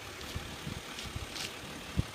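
A Ram 1500 EcoDiesel's 3.0-litre V6 turbodiesel idling with a low, steady rumble.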